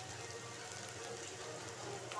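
Faint, steady sizzling of chopped onions frying in oil in a pan, with small scattered crackles.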